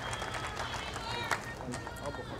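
Faint voices in the background of an outdoor crowd, with one sharp click about a second and a quarter in.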